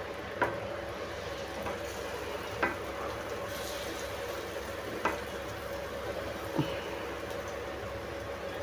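Paniyaram batter sizzling in the hot oiled cups of a kuzhi paniyaram pan as it is spooned in, with four sharp taps of the spoon against the pan spaced a couple of seconds apart.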